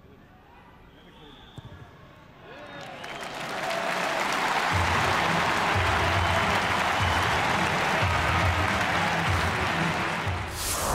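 A hushed stadium crowd, broken by a single sharp thud of a boot striking a rugby ball about a second and a half in. About a second later the crowd starts cheering and applauding the successful penalty kick, swelling to loud within two seconds.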